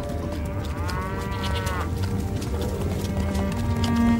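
A cow mooing once, for about a second, starting about a second in, over steady background music.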